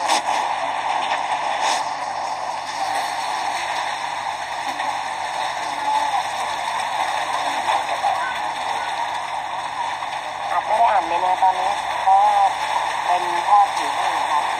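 Indistinct voices of people talking over a steady rushing background noise, the voices growing clearer toward the end.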